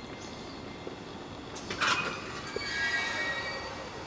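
Wheels of a 211 series electric train squealing as it rolls over curved track and points. A sharp burst of noise comes about two seconds in, followed by several steady high-pitched squeal tones held to the end.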